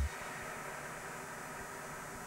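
A low, steady hiss with no music or speech: the background noise of an off-air TV recording.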